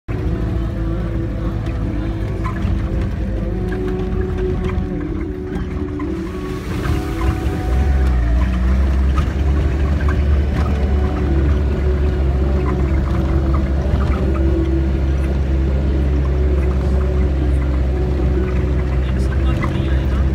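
1990 Land Rover Defender's engine running steadily as it drives over a rough dirt track, with small rattles and knocks from the ride. From about eight seconds in, the engine's drone turns deeper and louder.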